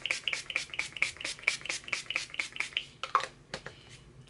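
Maybelline Master Fix setting spray misted onto the face from its pump bottle: a rapid run of about twenty short spritzes, several a second, stopping a little after three seconds in.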